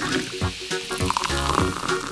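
Carbonated soda water fizzing and splashing as it is poured into and overflows small plastic cups, over background music with a steady beat.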